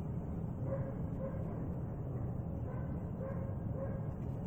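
A sighthound giving short, pitched whines or yips, about five brief notes spread over a few seconds, over a steady low background rumble.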